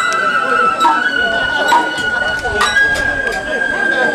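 Festival float music: a bamboo flute holds one long high note that steps up in pitch about two-thirds of the way through, with a few sharp percussion strikes, over the voices of the float crew and crowd.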